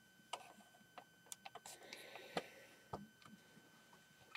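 Faint, scattered clicks and knocks of plastic Lego bricks being handled as the upper section of a Lego castle set is lifted off, the sharpest click about two and a half seconds in.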